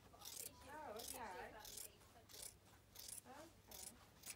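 Scissors cutting across a length of fabric on a cutting table: several quiet, short crunching snips at an uneven pace.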